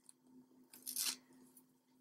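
Fingernails picking and scraping at a paper sticker stuck to a paperback cover, a brief cluster of faint scrapes about a second in, with a faint steady hum underneath.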